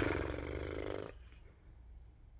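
A woman blowing out one long breath through pursed lips, lasting about a second.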